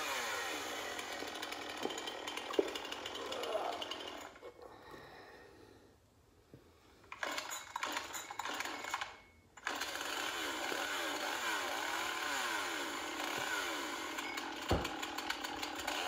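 Chainsaw sound effect played from an iPad speaker, thin with no low end, its engine revving up and down. It fades out about four seconds in, comes back briefly around seven seconds, breaks off again near nine and a half seconds, then runs steadily, with a single dull thump near the end.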